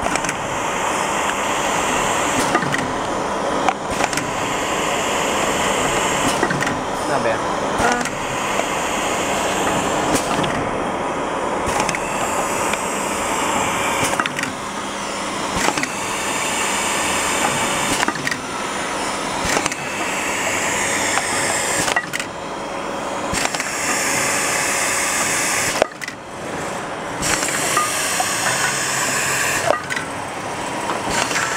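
Rotary tube filling and sealing machine running: a steady mechanical whir and hiss with a sharp click or knock every couple of seconds as the turntable indexes and the filling, heat-sealing and crimping heads work. Indistinct voices are mixed in.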